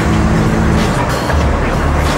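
Street traffic: a motor vehicle's engine running close by, a steady low sound, with background music under it.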